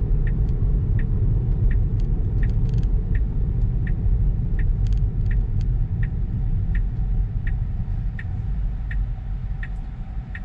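Low tyre rumble from a Tesla Model 3 rolling slowly over a gravel road, heard inside the cabin, with a regular tick about twice a second throughout: the turn signal, as the car slows to turn off the road.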